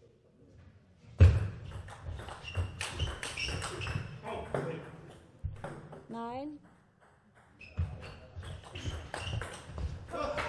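A table tennis ball is hit back and forth in doubles rallies: quick sharp clicks of the ball on rubber rackets and the table, with a loud hit about a second in. Players give short shouts between points.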